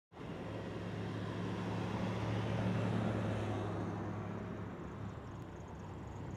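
Road traffic: a car driving past, its sound swelling over the first few seconds and easing off after, over a low steady hum.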